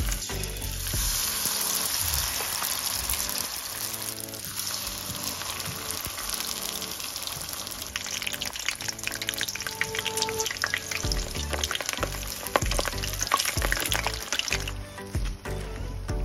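Brown-sugar-coated banana lumpia (spring rolls) sizzling steadily in hot oil in a frying pan. Sharper crackles and clicks join in from about halfway as the rolls are turned with metal tongs.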